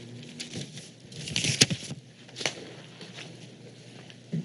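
Light rustling with a few short, sharp clicks and knocks, the loudest about a second and a half in.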